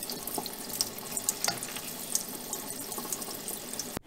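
Water running from a kitchen faucet into a sink while hands rinse a bunch of fresh dill under the stream: a steady rush with small scattered splashes and ticks.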